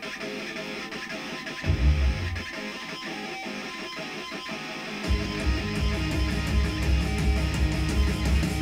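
Heavy rock music played back through studio monitors in a room: guitar-led at first, with a brief low hit about two seconds in, then bass and drums coming in heavily about five seconds in.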